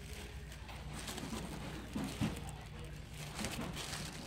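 Plastic bags crinkling and rustling as bagged dolls are pushed aside and handled, over a steady low store hum, with faint voices in the background.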